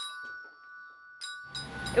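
Marching-band bell lyre struck once, a bright metal-bar note ringing on and fading over about a second and a half.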